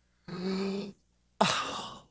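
A man sighs: a short held voiced sigh, then a breathy exhale that fades out.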